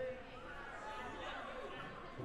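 Indistinct chatter of voices in a large, echoing gymnasium.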